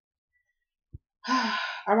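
A woman's audible sigh, a breathy exhale with a little voice in it, about a second and a quarter in. A single faint soft tap comes just before it, after a second of silence.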